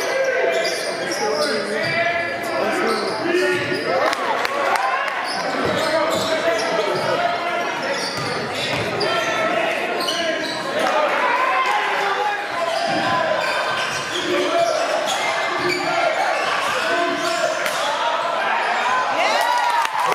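Live game sound in a gymnasium during a basketball game: many overlapping voices of players and spectators, with a basketball bouncing on the hardwood and echoing in the hall.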